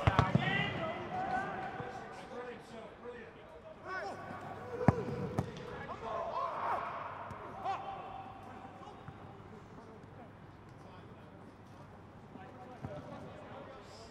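Footballers' shouts ringing around an empty stadium with no crowd noise, loudest in the first seconds and dying away. A football is struck with one sharp thud about five seconds in.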